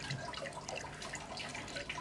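Water trickling and dripping inside an aquaponics bell siphon's standpipe, many small irregular drips over a steady trickle. The dripping comes from a small leak hole that lets water drip out as a sign that the pump is running.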